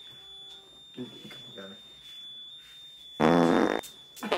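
A loud, buzzy fart noise lasting about half a second near the end.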